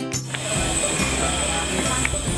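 Background music with clear sustained notes cuts off about a quarter second in. It gives way to a loud, even outdoor hubbub carrying a steady high-pitched tone.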